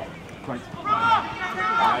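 Men shouting short calls on a football pitch, 'Hey! Hey! Right!', starting about halfway in, over open-air background noise.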